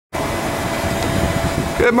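Steady city-street background noise: a low, uneven rumble with a thin steady hum over it. A man's voice starts near the end.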